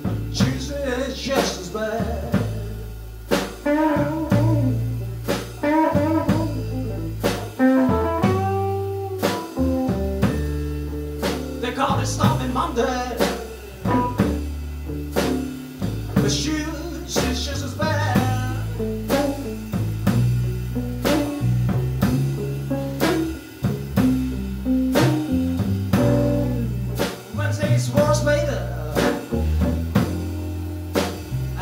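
Live electric blues trio playing a slow blues: electric guitar, bass guitar and drum kit at a slow, steady beat, with a man singing in places.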